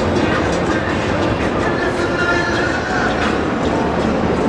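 A train running past on nearby rails: a steady rumble with clatter over the din of a busy city street.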